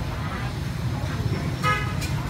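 Steady low rumble of street traffic, with one short vehicle horn toot near the end.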